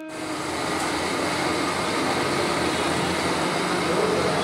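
Steady background noise of an open courtyard: an even rushing hiss with a low rumble and no distinct voices, bells or knocks.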